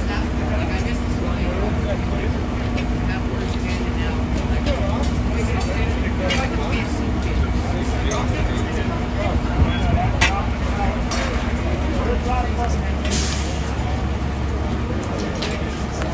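Steady low rumble of fire apparatus diesel engines running, with indistinct voices, a few scattered knocks, and a short hiss about thirteen seconds in.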